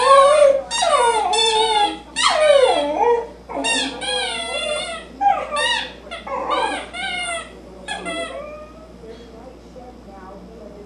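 Shetland sheepdog howling and whimpering while it mouths a squeaky toy. It gives a run of drawn-out calls that waver up and down in pitch, and they stop about eight and a half seconds in.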